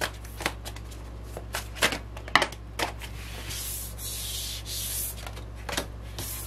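Tarot cards handled over a wooden table: a string of short card snaps and taps in the first half, then two strokes of cards sliding and rubbing across the tabletop from a little past the middle.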